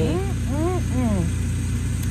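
An engine idling steadily, a low, even drone, with a woman's voice speaking a few words in the first second.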